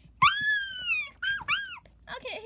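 A child's high, squeaky voice making animal-like cries for a plush toy: one long cry that rises and then falls, followed by two short ones.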